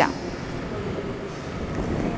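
Steady background noise: an even hiss with a faint high-pitched whine running through it.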